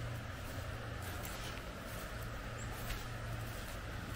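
A few soft footsteps on a wet, muddy trail over a steady outdoor background hiss and low rumble.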